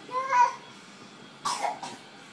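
A toddler's voice: a short, high, rising vocal sound, then about one and a half seconds in a brief breathy burst like a cough or a huff of breath.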